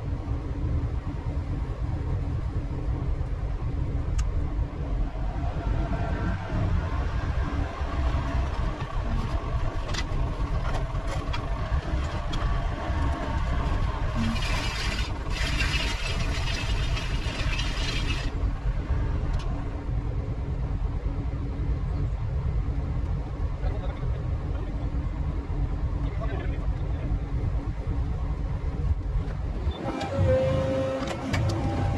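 Excavator diesel engine running steadily under load as its hydraulic arm lifts and tips a heavy steel pontoon, with occasional metal knocks. A few seconds of hiss come in midway.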